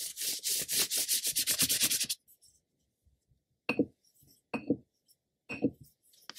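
Ink-loaded calligraphy brush scrubbing rapidly across paper in quick back-and-forth strokes for about two seconds, then three brief separate strokes about a second apart.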